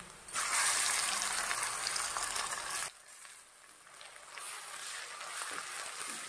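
Wet garlic, ginger and onion paste sizzling as it hits hot mustard oil in a kadai: a loud crackling hiss that stops suddenly about three seconds in, then a fainter sizzle that builds back near the end.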